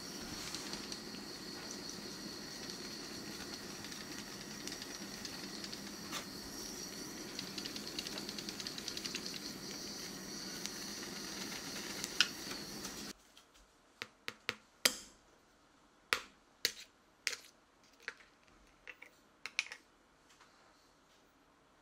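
Kitchen blowtorch hissing steadily over sugar on crème brûlée, with small crackles as the sugar caramelises; it cuts off about two-thirds of the way through. A string of sharp taps and clicks follows as a metal spoon cracks the hardened caramel crust.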